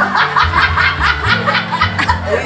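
A woman laughing hard in quick, rhythmic ha-ha bursts, about six a second, over background music.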